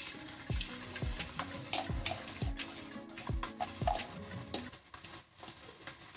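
Chopped onions sizzling and crackling in hot oil in a stainless steel pot as they are tipped in, under background music with a steady beat.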